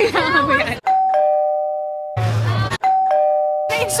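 A two-note ding-dong chime, a higher note followed by a lower one, each held and slowly fading. It sounds twice, cut in abruptly like an added sound effect, with a brief burst of noise and low hum between the two chimes.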